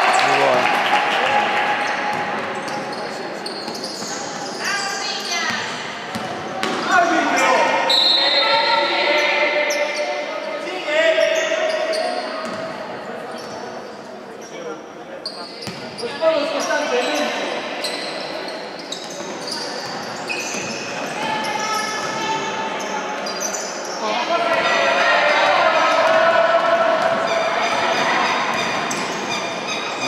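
Basketball game in a large echoing hall: the ball bouncing on the wooden court in short knocks, under a steady mix of shouting voices from players and spectators.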